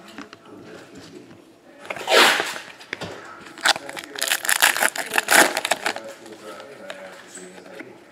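A foil trading-card pack wrapper crinkling and tearing open: a short rip about two seconds in, then a run of dense crackles from about three and a half to six seconds in.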